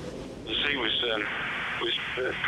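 A man speaking over a narrow, phone-like line that cuts off the high tones, starting about half a second in.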